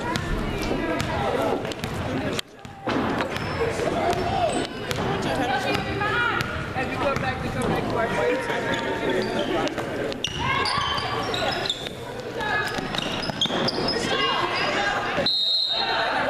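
Basketball dribbling on a hardwood gym court during play, amid steady spectator talk and calls. The sound briefly cuts out twice.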